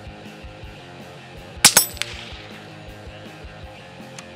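A single shot from a Tikka T1X UPR rimfire rifle in .17 HMR about a second and a half in: a sharp crack with a second crack close behind it, over steady background music.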